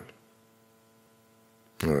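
A faint, steady electrical hum of several even tones under quiet room tone in a pause of speech, with a man's voice starting again near the end.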